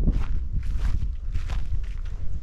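Footsteps crunching on a sandy dirt path at a steady walking pace, three or four steps, over a low rumble.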